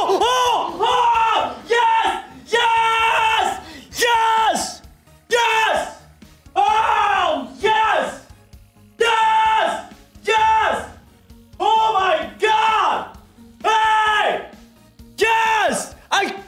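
A man yelling over and over in excitement at a big slot win: a long series of loud wordless shouts, about one a second, each sliding down in pitch at its end. Slot win music plays underneath.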